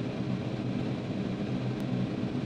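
Steady cockpit drone of a Cirrus SR22T's turbocharged six-cylinder engine and propeller in cruise flight, an even rumble with low steady tones.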